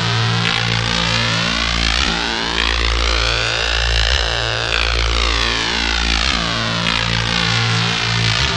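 1995 Belgian techno track: a siren-like sweep rising in pitch to about the middle and falling back down by the end, over a pulsing bass line.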